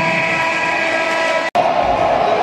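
A loud, steady horn blast of several tones at once, held for over two seconds and cut off abruptly about a second and a half in.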